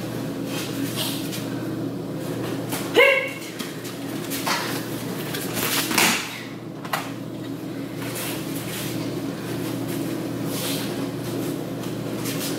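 A brief loud shout (a kiai) about three seconds in, then a thud of a body landing on the tatami mats about six seconds in, with a smaller knock soon after, over a steady background hum.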